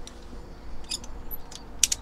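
Metal climbing karabiner handled on a rope while a clove hitch is tied into it: a few light clicks about a second in and a sharper click near the end.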